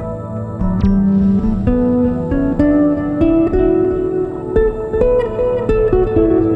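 Background music: a gentle plucked-string melody, its notes stepping upward from about a second in.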